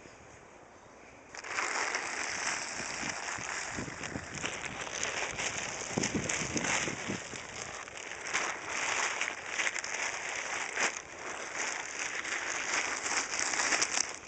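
Blue plastic tarp rustling and crackling close to the microphone, a continuous crinkling that starts about a second in.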